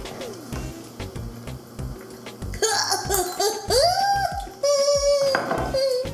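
Background music with a steady beat; about two and a half seconds in, loud laughter and drawn-out groaning break out, a reaction to the taste of a lawn-clippings-flavoured jelly bean.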